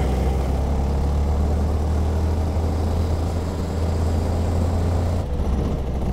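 A 125cc go-kart engine running hard under load, heard from the kart's own seat. The note holds steady, then dips briefly near the end.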